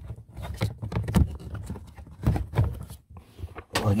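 Irregular rustling, scraping and knocking of hands working a car's cabin air filter out of its plastic housing, with handling noise right at the microphone. Louder knocks come about a second in and again a little past halfway.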